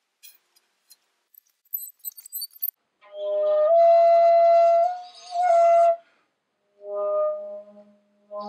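Rim-blown Alaskan yellow cedar Basketmaker (Anasazi-style) flute being sounded: after a few seconds of faint clicks, a held note starts about three seconds in and steps up slightly in pitch, breaks off, comes back briefly, then a shorter, lower note sounds near the end. These are a player's first tries at getting this end-blown flute to speak.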